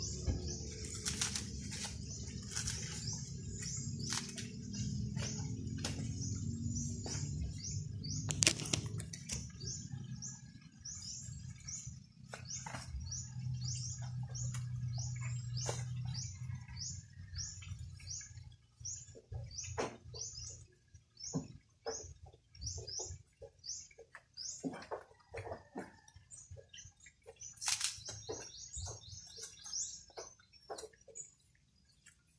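Dry coconut husks knocking as they are handled and set onto a stack, the loudest knock a little over a quarter of the way in and more frequent knocks in the second half. Behind them a short high chirp repeats about twice a second, and a low hum runs through the first half.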